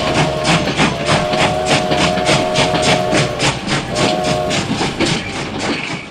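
Battery-powered toy steam train running on plastic track, with an even chugging rhythm about four beats a second and a held whistle-like tone for the first three seconds and again briefly a second later.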